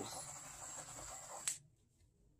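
Small handheld butane torch hissing steadily as its flame is passed over wet poured acrylic paint to pop air bubbles, then shut off with a click about a second and a half in.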